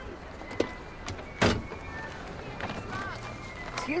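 A car door swung open into the side of the neighbouring parked car: a single sharp knock about one and a half seconds in, over quiet parking-lot background noise.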